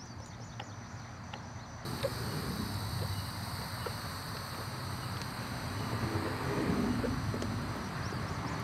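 Hand pump on a gear-oil bottle being worked, pushing 80W-90 gear lube up into an outboard's lower unit from the bottom drain, its strokes heard only as a few faint ticks. About two seconds in, a steady broad background noise comes in suddenly and swells slightly.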